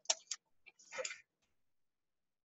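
Faint computer keyboard keystrokes: a few quick clicks, then a short soft hissy sound about a second in.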